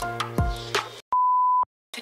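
Background music with a steady beat and deep bass hits stops about a second in, followed by a single steady high-pitched electronic beep lasting about half a second.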